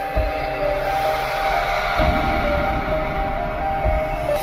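Intro-sting music: several held synth tones over a noisy rumble that grows stronger about two seconds in.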